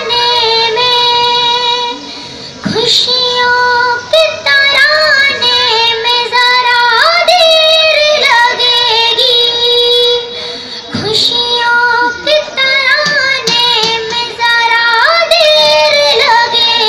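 A girl singing an Urdu ghazal through a microphone and loudspeaker, in long held notes with ornamental turns and bends in pitch. She breaks briefly for breath about two seconds in and again near eleven seconds.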